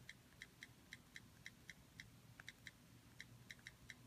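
Faint, short, irregular clicks, several a second: an iPod's on-screen keyboard key clicks as a Wi-Fi password is typed in.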